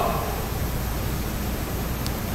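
Room tone: a steady even hiss with a faint low hum, after a man's voice dies away right at the start.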